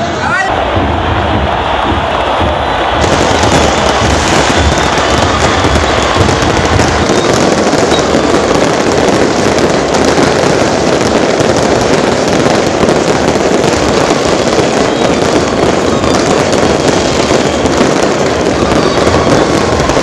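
Many fireworks and firecrackers going off together in a continuous dense crackle, with a large crowd's voices underneath.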